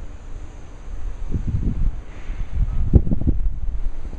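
Wind buffeting the microphone in irregular low rumbling gusts, strongest about a second and a half in and again around three seconds in.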